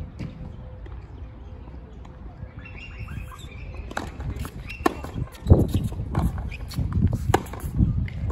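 Tennis rally on a hard court: sharp hits of racquet strings on the ball and ball bounces, several in a row from about halfway through, mixed with heavier thuds of players' feet on the court.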